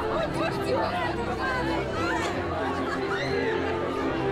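Crowd chatter and overlapping voices, with music playing steadily underneath.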